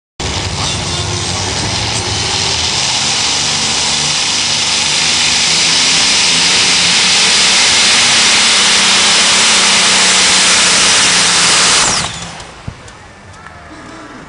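Multi-engine modified pulling tractor running flat out under load during a pull: a very loud, dense, unbroken engine noise that builds slightly and drops away abruptly about twelve seconds in.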